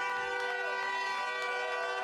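A horn sounding one steady multi-tone chord for about two seconds over crowd noise, starting and stopping abruptly.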